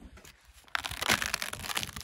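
Footsteps and crouching crunching on loose, crumbly badlands shale and gravel: a dense, irregular crackle that starts about three-quarters of a second in.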